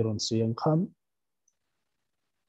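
A man's voice speaking over a video call for just under a second, then the line goes completely silent.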